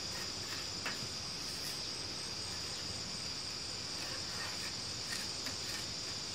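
Insects chirring in a steady, high-pitched continuous drone over faint outdoor background noise.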